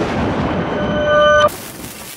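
Edited sound effects: a deep boom dying away, joined by a ringing tone that swells and cuts off suddenly about a second and a half in, then a steady static hiss.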